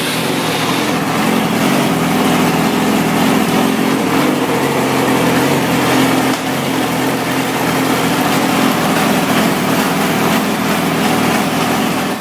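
2007 Yamaha R6's inline-four engine running at a steady idle just after starting up, through its GYTR aftermarket exhaust.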